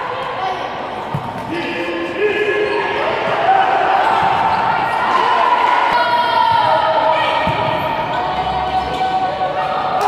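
Futsal match in a gymnasium: voices shouting and calling out in long held cries over short knocks of the ball being played on the court, all echoing in the hall.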